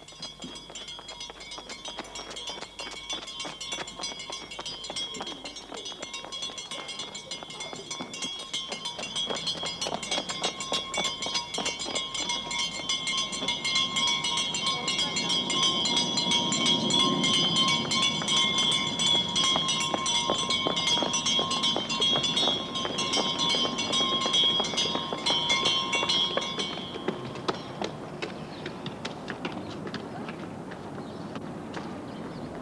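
A school bell ringing continuously in fast, even strokes, faint at first and growing louder as it is approached, then stopping near the end.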